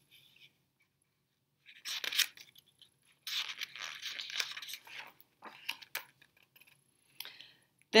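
Paper rustling and scraping as a page of a hardcover picture book is turned, in several short bursts, the longest about two seconds.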